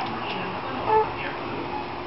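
A baby's short, high-pitched vocalization about a second in, over steady background noise.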